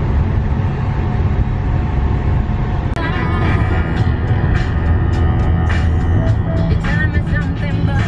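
Music laid over the steady low rumble of a campervan driving at road speed, heard from inside the cabin. About three seconds in there is a sudden cut, after which the music is clearer, with held tones.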